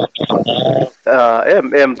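Speech only: a man talking over an online video call, pausing briefly about a second in.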